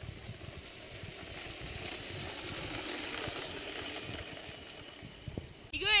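Wheels of a low downhill cart rolling fast on asphalt: a rattling rumble that swells as it nears and fades after about three seconds. A short shout comes at the very end.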